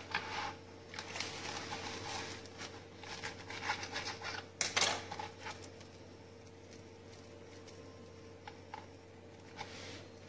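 A knife cutting through crisp grilled sandwiches on a chopping board, with uneven crunching and scraping through the first half and a sharp knock of the blade on the board about halfway through. After that come quieter handling sounds as the halves are moved, over a faint steady hum.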